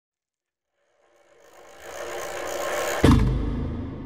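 Logo intro sound effect: a whoosh swelling up out of silence for about two seconds, then a deep bass hit about three seconds in that rings on and slowly fades.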